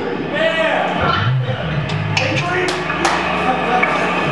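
Between-song noise on a small rock stage: a low electric bass note rings from about a second in, with a few sharp taps and voices in the room.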